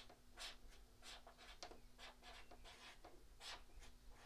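Faint squeaks and scratches of a marker pen writing on a whiteboard: a quick run of short strokes as words are written out.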